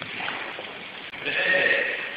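A person's voice: a short, high, drawn-out cry-like sound in the second half, held on a steady pitch for most of a second.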